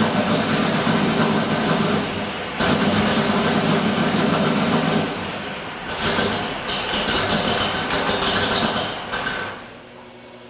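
1987 Mustang LX's 5.0 HO V8 running with its rpm surging up and down every couple of seconds, the surging caused by a lithium booster pack's duty cycle pulsing the voltage because the battery is dead. Near the end the engine sound falls away sharply.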